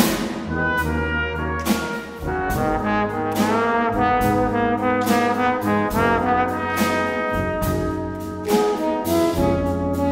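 Brass quintet playing with a concert band: trumpet and trombone lines in a run of changing notes over held low bass notes.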